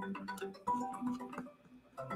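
Incoming-call ringtone: a faint, repeating tune of short marimba-like notes at several pitches, with a brief break near the end.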